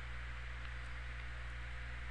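Steady low electrical hum with faint hiss, the background noise of the recording, with no distinct sounds.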